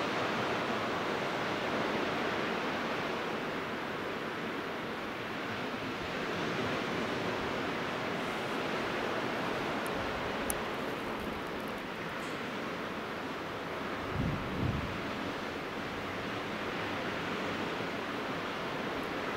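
Gulf of Mexico surf breaking gently on the beach below, a steady wash that rises and falls slowly. A brief low rumble of wind on the microphone comes about fourteen seconds in.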